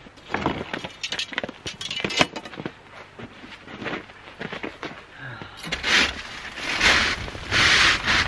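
Light knocks and clicks as chimney brush rods are handled, then, from a little past halfway, a wire chimney brush scrubbing inside a stainless metal chimney pipe in a few strong scraping strokes, knocking loose creosote.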